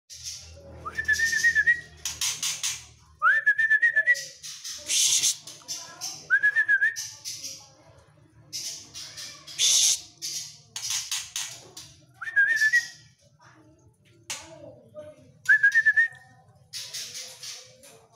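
Male white-rumped shama (murai batu Medan) singing: about five short whistles that rise and level off, alternating with loud, harsh, scratchy chatter phrases.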